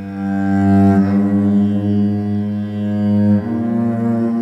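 Cello bowed in long, sustained low notes, playing a drone. The held note changes to another about three and a half seconds in.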